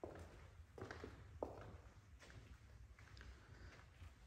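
Faint footsteps of a person walking slowly, about one step every three-quarters of a second, over a low steady hum.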